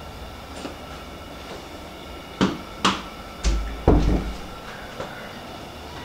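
A door being handled and opened: a few sharp clicks and knocks of the handle and latch, then a couple of heavy low thuds, over a steady low hum.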